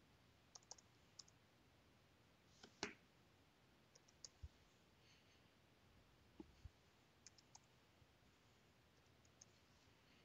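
Faint, scattered clicks of a computer keyboard and mouse as a login code is typed and a button clicked, over near silence. The single loudest click comes about three seconds in, with small clusters of quicker clicks near the start and in the second half.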